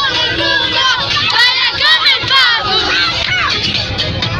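Several young girls' voices shouting and squealing together loudly, their high pitches rising and falling over one another.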